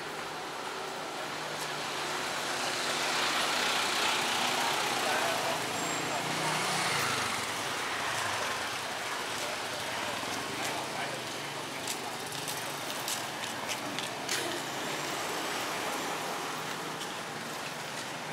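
Street traffic: motor vehicles passing close by on the road, one growing loud a few seconds in and fading away, with engine hum from a passing motorcycle or car. A scatter of short clicks and knocks comes a little past the middle.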